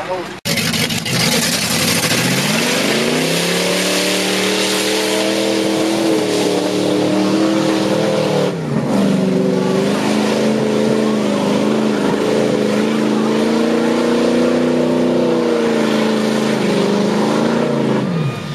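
A mud-bog truck's engine revving hard as it powers through a mud pit. Its pitch climbs over the first few seconds and is held high, dips sharply once about halfway through, then climbs again and drops off right at the end.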